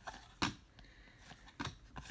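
Trading cards being flipped through by hand, the card stock giving short crisp flicks about half a second in and again about a second later as each card is moved to the front of the stack.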